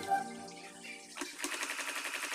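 Background music dying away, then an electric sewing machine stitching through canvas: a fast, even run of needle strokes starting a little after a second in.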